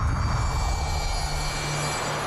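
A dramatic sound effect: a loud, steady rushing rumble with a low hum beneath it. It starts abruptly just before the figure materialises in the clouds.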